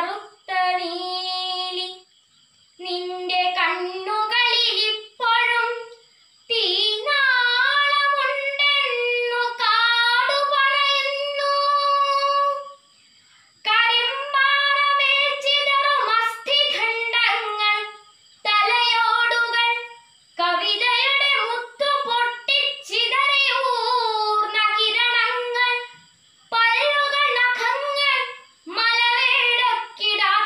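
A girl's unaccompanied solo voice reciting a Malayalam poem in the melodic, sung style of kavithaparayanam, in long held phrases broken by short pauses for breath.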